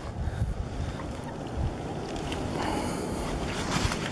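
Wind rumbling on the microphone, with water splashing as a hooked bass thrashes at the surface on the fly line and is pulled in.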